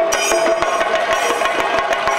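Chenda drums beaten fast with sticks: a dense, unbroken stream of sharp strikes, with a bright ringing sustained above them.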